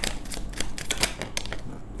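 A deck of tarot cards being handled and shuffled in the hand: a quick, irregular run of light clicks as the cards flick against each other.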